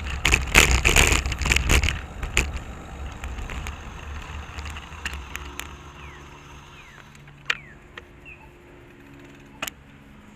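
Riding noise picked up by a bicycle-mounted camera: road rumble and wind with rattling clicks, loud at first and fading as the bike slows to a stop. Two sharp clicks come later, one well into the stop and one near the end.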